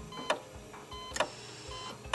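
Title-sequence sound effects: two sharp clicks about a second apart, with short electronic beeps in between, over a faint music bed.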